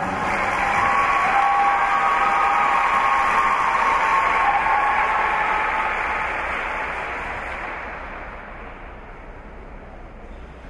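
Audience applauding the announced skater, the clapping dying away over the last few seconds.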